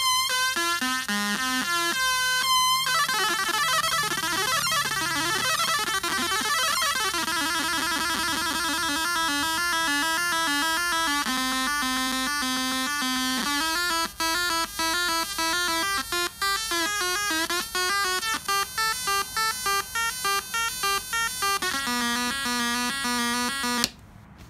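Homemade cigar box synth built around 555 and 556 timer chips, with a 4017 four-step sequencer, playing buzzy electronic tones through its small built-in speaker. The sequence steps between notes and the pitches shift as the tone knobs are turned. The steps turn quick and choppy in the second half, and the sound then cuts off.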